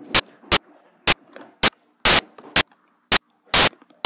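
Rubber loom bands and a plastic hook snapping and clicking against the pins of a Rainbow Loom as the bands are hooked forward. The clicks are sharp and come in a regular series of about eight, roughly two a second.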